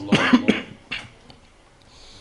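A man coughing several times in quick succession and clearing his throat, followed by one more short cough about a second in.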